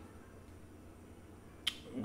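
Quiet room tone, then a single short, sharp click a little past one and a half seconds in.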